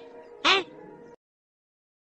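A single short, high-pitched vocal call about half a second in, its pitch rising and falling once, over a faint steady tone. The audio then cuts off to dead silence a little after a second in.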